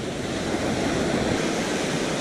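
Ocean surf breaking and washing up the beach, a steady rush of noise.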